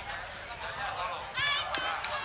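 Background voices with a brief, high-pitched shout about one and a half seconds in, followed by a single sharp knock.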